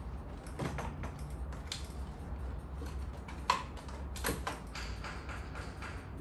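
Scattered plastic clicks and knocks as the top shell of a Roborock S5 robot vacuum is worked loose from its chassis and lifted off, with two sharper clicks about three and a half and four seconds in, over a steady low hum.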